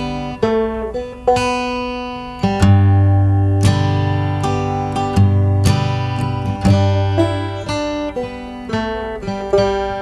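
Music: an acoustic guitar playing the instrumental intro of an indie folk-rock song, with new notes struck about once a second over low notes.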